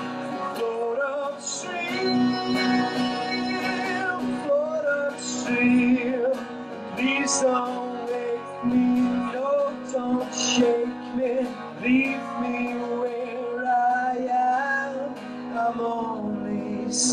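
A man singing to his own strummed acoustic guitar, a live solo song.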